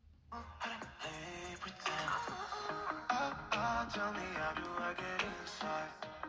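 A song with a singing voice playing through the iPhone SE (2020)'s built-in speaker, starting just after a brief gap. The speaker sounds balanced, with some depth and better highs.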